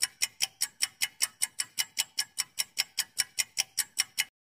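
Countdown timer sound effect: a clock-like tick repeating evenly at about six ticks a second, marking the time allowed to answer a quiz question.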